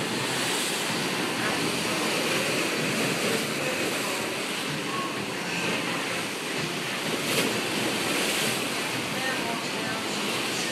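Steady rushing noise of tropical-storm wind and water, with wind buffeting the microphone. There is one brief sharp knock a little past seven seconds in.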